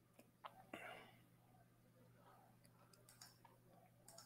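Near silence: room tone with a steady low hum, a few faint clicks and a soft breathy sound about a second in.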